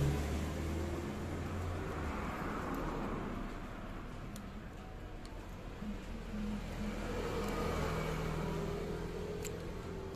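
A motor vehicle's engine running in the background, a low hum that swells and fades a little, with a few faint clicks.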